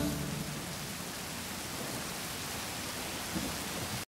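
Steady rainfall, an even patter with no rhythm, at the close of an a cappella song about rain; the last sung chord dies away at the very start.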